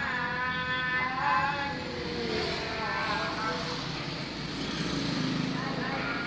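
Steady low rumble of a car's cabin, with a voice in the background.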